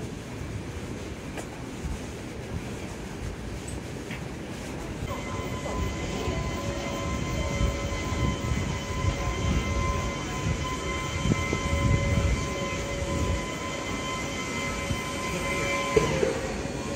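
Outdoor ambience of a busy pedestrian street: a rumble of walking-crowd noise and movement. About five seconds in, a steady tone of several pitches sets in and holds without change.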